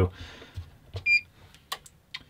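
Electrical installation tester beeping once about a second in, a short high tone, followed by a couple of sharp clicks from its buttons as an insulation resistance test is started.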